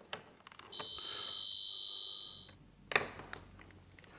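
Two-pole voltage tester sounding a steady high-pitched beep for about two seconds while its probes touch a terminal of the switched-off lamp: it is signalling live voltage where there should be none, the hazard of this switch wiring. A few faint clicks or taps follow.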